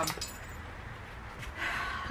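A pause in talk: a low, steady background hum with one faint click about a second and a half in.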